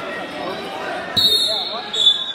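A referee's whistle blown about a second in, one steady high blast of just under a second, then a second short, loud blast. This is the signal that restarts wrestling from the referee's position. Underneath it runs the constant chatter of voices in a large gym.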